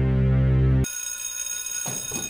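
Loud, low droning electronic score that cuts off suddenly a little under a second in. A high, steady ringing bell tone takes its place.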